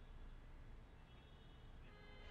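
Near silence: faint room tone with a low hum, in a gap between two voices on a broadcast link.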